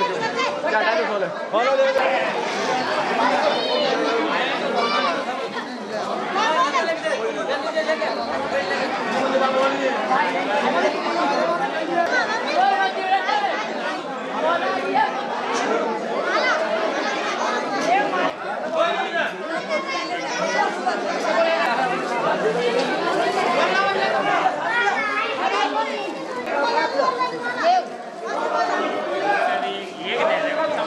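Crowd chatter: many people talking at once, with no single voice standing out and no let-up.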